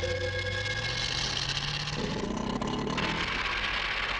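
A vehicle engine running and slowly rising in pitch as the vehicle pulls away. From about two seconds in a loud rushing noise builds over it, then cuts off sharply just after the end.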